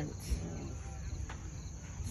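Crickets chirping in the grass, a steady high-pitched trill.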